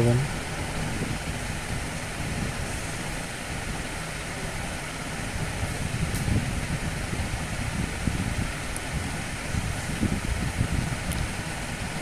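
Steady background noise, an even hiss and low hum with no distinct event.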